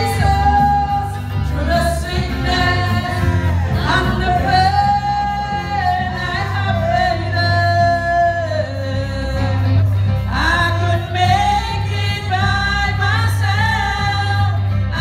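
A woman sings a gospel worship song into a microphone over a live band with electric bass, holding long notes that bend at their ends.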